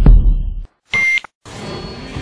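Edited intro sound effects: two deep booming hits, then a short steady electronic test-tone beep that cuts off sharply. After a brief gap, music with a beat starts near the end.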